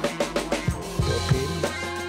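Background music with a steady drum-kit beat over a bass line and sustained pitched notes.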